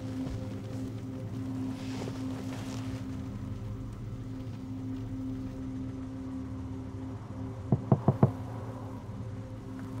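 Four quick knocks of knuckles on a car's side window, about eight seconds in, over a low steady hum heard from inside the car.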